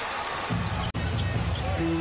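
Basketball game sound from an arena: crowd noise and the ball being dribbled on the hardwood court. There is a short cut just under a second in, and steady arena music notes come in near the end.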